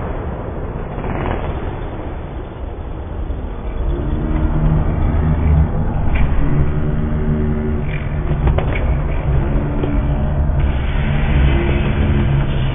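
Freestyle motocross dirt bike engines running with a low rumble inside a large hall. From about four seconds in, low-pitched music plays over it.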